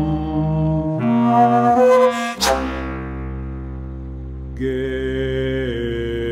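Contemporary chamber music for bass flute, bass clarinet and baritone voice. Long, low held notes change about a second in. A sharp, loud accented attack comes about two and a half seconds in and dies away, and a new sustained chord enters near the end.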